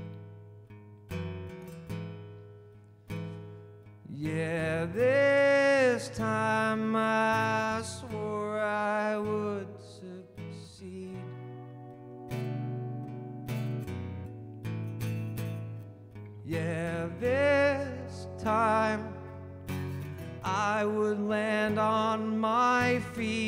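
Live folk-pop song: a male singer sings lines over strummed and plucked acoustic guitar. He comes in about four seconds in, pauses while the guitar plays on through the middle, and sings again from about two-thirds of the way through.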